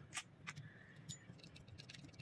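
Faint metallic clicks of a screwdriver working the screws of a lever door handle's rose, the two clearest in the first half second, over near silence.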